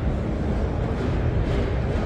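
Steady background noise of a busy exhibition hall, with a strong low rumble and no distinct events.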